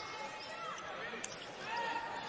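Low court sound of a basketball game: a basketball bouncing on the hardwood floor and a few brief sneaker squeaks, over faint arena background.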